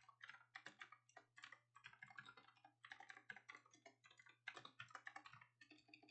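Faint computer keyboard typing: quick, irregular keystrokes, several a second, with a couple of short pauses, as terminal commands are typed.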